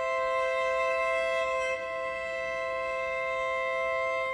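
Slow background music of long held chords, with no beat.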